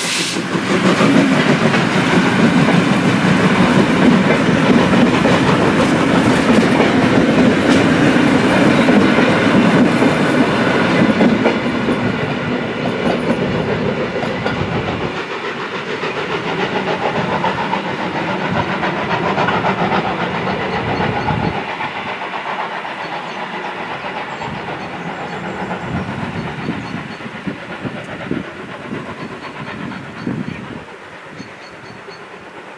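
DB class 78 steam tank locomotive and its coaches rolling past, wheels clacking over the rail joints. Loud for the first ten seconds or so, then fading steadily as the train draws away.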